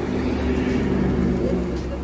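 A motor vehicle's engine drones as it passes along the road, swelling to its loudest about a second in and then easing off.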